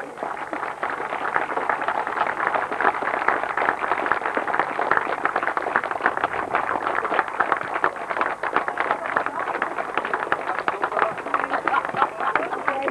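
Crowd applause: a steady round of clapping that builds within the first second and keeps going.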